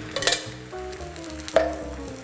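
Tomato pulp sizzling in a hot frying pan of olive oil and softened onion, with a short scrape near the start and one sharp knock of a utensil on the pan about a second and a half in.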